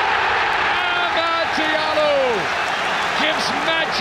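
A stadium crowd roars at a headed goal as a radio commentator shouts over it in long, drawn-out, excited calls.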